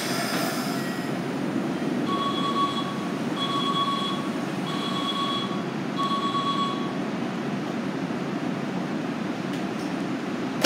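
Platform screen doors' warning beeps as the doors close: four even two-tone beeps, each a little under a second long and about 1.3 s apart. They sound over the steady hum of a Keikyu train standing at the platform, with a short hiss at the start.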